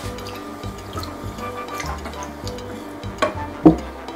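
Milk pouring from a bottle into a saucepan of melted butter, over steady background music. A single sharp knock comes near the end.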